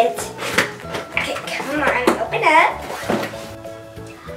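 Background music with a voice over it; the music's steady held notes are clearest near the end.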